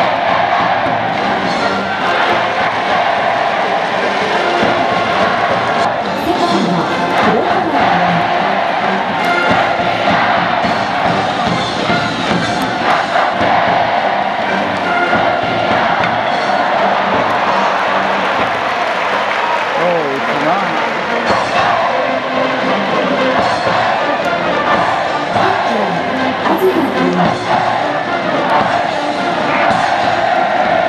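Stadium crowd noise with a cheering section's brass band playing and the fans chanting and cheering along, loud and continuous.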